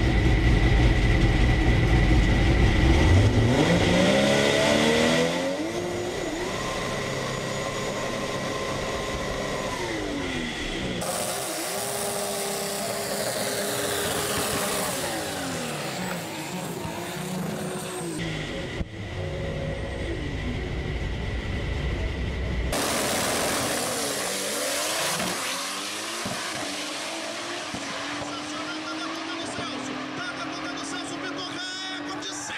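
Chevrolet Opala drag car's engine revving up and down in several edited clips, loud and rumbling at first, with the engine note rising and falling repeatedly and the sound cutting abruptly between shots.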